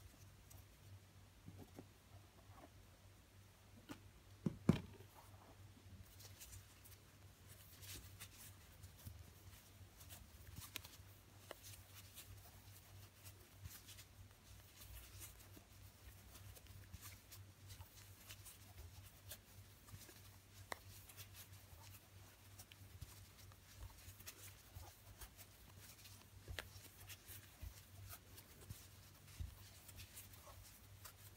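Faint rustling and soft clicks of a large plastic crochet hook pulling chunky T-shirt yarn through single crochet stitches, with one louder knock about four and a half seconds in, over a low steady hum.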